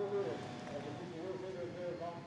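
A faint voice speaking in the background, quieter than the commentary.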